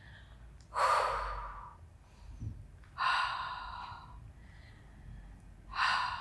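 A woman breathing audibly close to the microphone: two long breaths about a second and three seconds in, and a shorter one near the end, as she breathes through a Pilates exercise.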